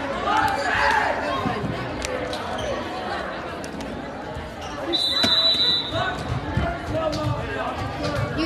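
Gym crowd chatter and players' voices, with one short referee's whistle blast about five seconds in. Then a run of regular dull thumps, about three a second: a volleyball being bounced on the hardwood floor before the serve.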